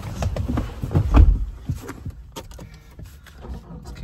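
Knocks and thumps of someone settling into the driver's seat of a ute cabin, the heaviest thud about a second in, then quieter rustling and handling noise.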